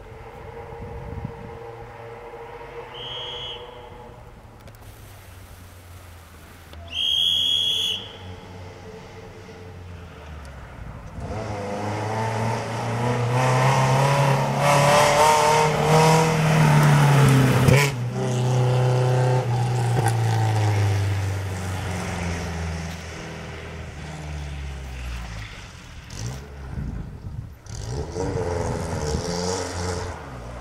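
Rally car engine revving hard on a gravel hill climb, the pitch rising and dropping through gear changes as the car approaches and passes close by. It is loudest about 16 to 18 seconds in, then fades as the car climbs away. Two short high-pitched tones sound before it, the second, about seven seconds in, the louder.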